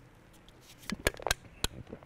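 A man gulping beer from a can: a quiet start, then a quick run of four or five short clicking swallows from about a second in.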